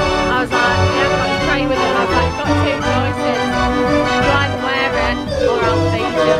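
Decap dance organ playing a tune: pipe organ voices with accordions and a drum kit keeping a steady beat.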